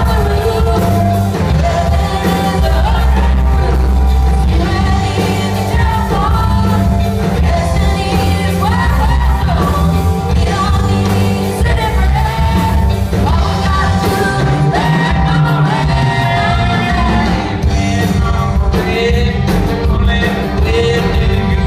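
Live rock band with electric guitars, bass guitar and drum kit playing at full volume, with two voices singing together at one microphone over it.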